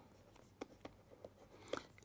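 Faint stylus writing on a pen tablet: a handful of soft, short ticks and scratches as letters are drawn.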